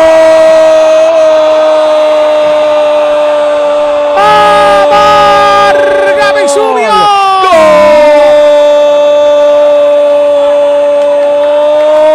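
Radio football commentator's long, drawn-out goal shout, "goool", one vowel held on a steady high pitch at full voice. It breaks briefly for breath about seven and a half seconds in and is then held again. A second, lower voice or tone joins for a moment near the middle.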